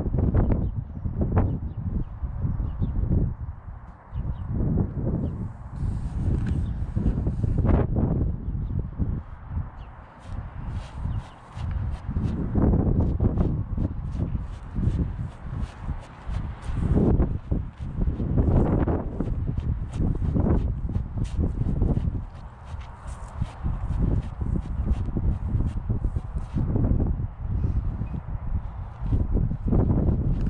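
Gusty wind buffeting the microphone, with footsteps and boots scuffing and crunching dry grass.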